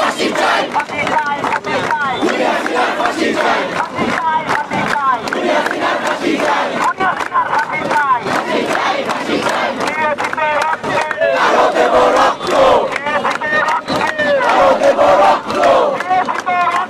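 A large crowd of protesters shouting together, many voices overlapping, loud and continuous, swelling a little in the second half.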